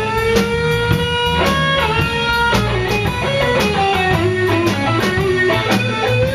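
A live blues-rock band playing an instrumental passage. An electric guitar plays held, bending lead notes over a steady drum beat, a second electric guitar and bass.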